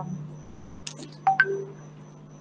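A steady low hum, with a few short clicks just under a second in and brief chime-like tones soon after.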